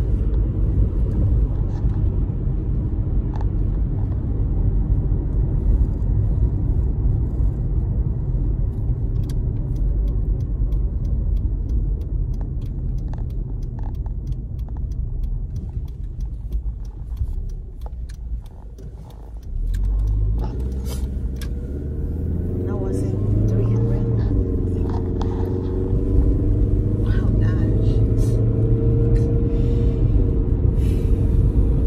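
Car engine and tyre rumble heard from inside the cabin while driving. The noise eases off about two-thirds of the way in as the car slows, then the engine note rises as it pulls away and speeds up again.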